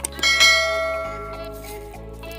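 A single bell-like chime sound effect, struck once and ringing out as it fades over about a second and a half, over background music.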